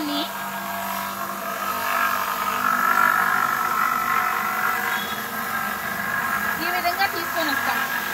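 Electric stone-cutting machine in a bead workshop running steadily with a whining hum. The hum grows louder about two to three seconds in, then eases back.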